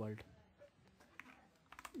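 A few faint, separate clicks from working a computer: one a little after a second in and a short cluster near the end.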